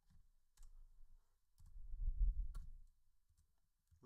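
A few faint, scattered keystroke clicks on a computer keyboard as a line of code is typed, with a low dull rumble in the middle.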